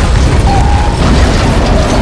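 Loud film explosion: a sustained, deep rumbling blast of a fireball.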